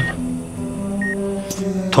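Background score of sustained low notes, with an operating-room patient monitor beeping about once a second.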